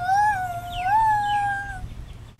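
A hand whistle blown through cupped hands: one long, hollow note that wavers up and down in pitch, then stops shortly before the end.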